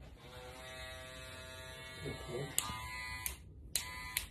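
Electric hair clippers buzzing steadily as they run. The buzz stops with a click a little over three seconds in, then sounds again briefly near the end.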